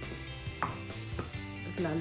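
Wooden pestle pounding cooked cassava with shredded coconut and sugar in a wooden mortar: dull thuds about half a second apart.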